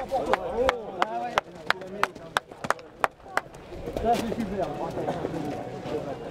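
A horse's shod hooves on pavement as the horse is walked, a steady clip-clop of about three sharp steps a second, with people talking in the background.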